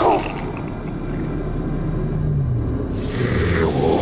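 Sci-fi sound-design effect: a low rumbling drone with a slow, deep moaning tone. About three seconds in, a sudden hiss joins it.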